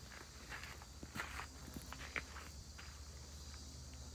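Footsteps on gravel: a handful of faint, irregular steps.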